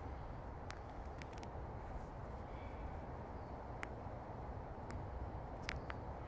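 Quiet forest ambience: a steady low rumble with about half a dozen short, sharp clicks scattered through.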